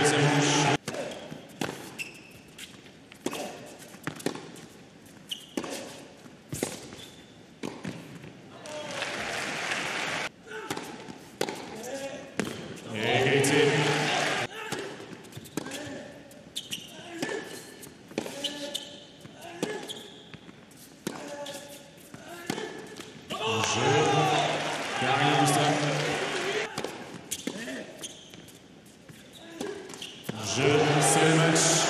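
Tennis rallies on an indoor hard court: a string of sharp racquet strikes on the ball and ball bounces, echoing in a large hall. Voices are heard between the shots at the start, about 13 seconds in and again near 24–26 seconds.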